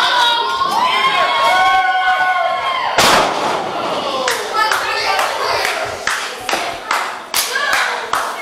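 Spectators shouting, then a wrestler's body slamming down onto the ring mat with one loud thud about three seconds in. A few smaller knocks and crowd noise follow.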